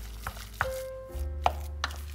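Wooden spoon knocking and scraping against a stainless steel saucepan while stirring thick cheese choux dough: four short sharp knocks, over background music.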